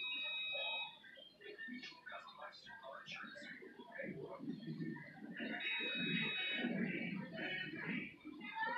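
Indistinct voices of people talking in the background, not close to the microphone. A steady high tone sounds briefly at the very start and again for about a second around six seconds in.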